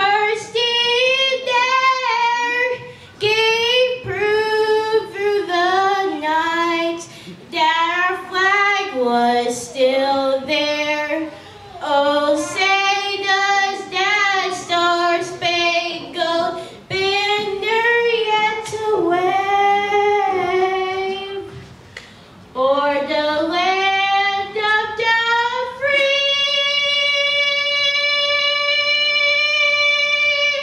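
A young female voice singing a solo melody unaccompanied, in phrases with short breaths between them. It ends on a long held high note near the end.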